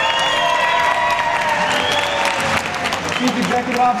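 Audience applauding, with held music tones over the clapping that fade out about three seconds in.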